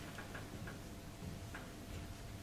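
Faint, irregular ticking clicks over a steady low room hum.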